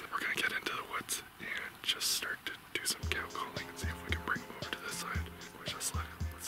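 Whispered talk, joined about halfway through by background music with low bass notes and held tones.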